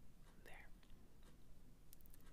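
Near silence with a few faint ticks and scratches of a pen tip on sketchbook paper, the sharpest ones near the end.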